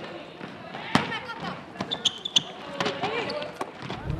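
A basketball game on a wooden court: the ball bouncing and knocking, with a sharp knock about a second in, while girls' voices call out around the court.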